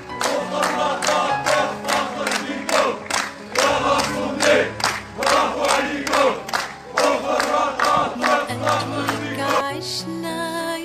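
A crowd of men chanting together with rhythmic clapping, about two to three claps a second, over a music track with held low notes.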